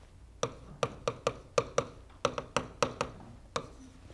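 Stylus pen tapping and clicking against the glass of an interactive touchscreen display while writing by hand: a quick, uneven run of about fourteen sharp taps.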